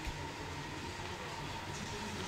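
Steady, fairly quiet murmur of a hockey arena crowd and rink during play, with a faint steady tone underneath.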